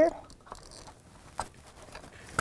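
Plastic wiring connector being handled and pushed onto its socket behind an engine oil filter housing, with one small sharp click a little past halfway.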